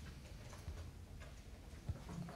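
Faint room tone with a few soft, short ticks, the sharpest one near the end.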